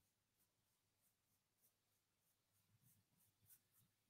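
Near silence, with faint scratchy strokes of a paintbrush on canvas.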